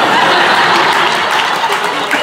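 Audience applauding with some laughter in response to a joke: a dense, steady clatter of many hands that starts just before and begins to thin out near the end.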